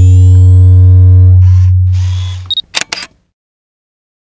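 Sound-effect sting for a photography logo: a loud deep hum with a few steady higher tones for about two and a half seconds, with a couple of swishes, then a short high beep and a quick run of camera-shutter clicks about three seconds in.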